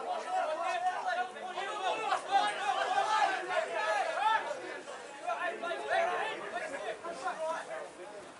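Several voices shouting and calling over one another, the chatter of players and supporters around a rugby ruck, with no single voice clear.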